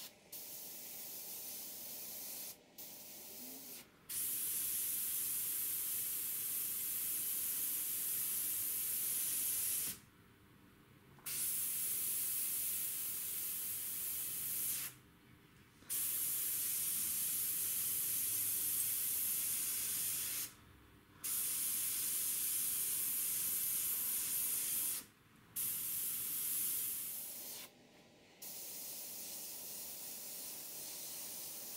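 GSI Creos PS.770 gravity-feed airbrush hissing as compressed air and paint spray through it, softly at first, then in louder passes of several seconds each. The hiss drops out briefly five times as the trigger is let go between strokes.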